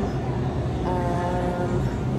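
Steady low hum of a supermarket's background noise, with a brief held tone for under a second in the middle.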